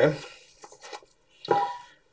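Light clicks of plastic film canisters and lids being handled on a bench, with one louder knock about one and a half seconds in.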